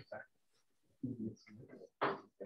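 Faint, indistinct murmured speech in short snatches, with silent gaps between them.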